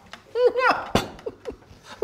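A man's short burst of laughter, a few quick pitched syllables about half a second in, followed by a single sharp sound about a second in.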